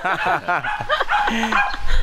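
A man and a woman laughing in short, high bursts.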